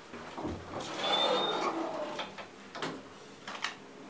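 The doors of an old traction elevator being opened on arrival: a scraping, squeaky slide about a second in, then several sharp clicks of the latch and handle.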